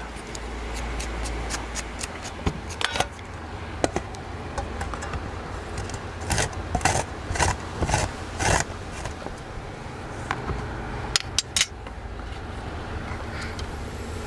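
Fresh ginger root being scraped with a knife to peel it and then grated on a metal grater: irregular rasping strokes, loudest in the middle, over a low steady hum.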